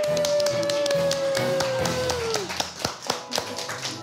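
Music: one long held note that drifts slightly down in pitch and ends about two and a half seconds in, over a busy run of quick percussive taps.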